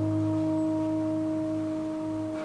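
A theatre orchestra holding one sustained chord, a few clear steady tones over a low note, easing off slightly near the end.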